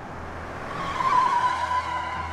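Car tyres squealing as a sedan swings through a sharp turn, building to a loud squeal about a second in, over the car's engine.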